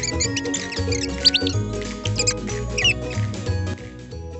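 Playful background music with a pulsing bass line, overlaid with many short, high squeaky chirps.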